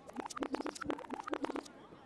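Hip-hop DJ scratching a record: a fast, irregular run of short scratches that cuts off about one and a half seconds in.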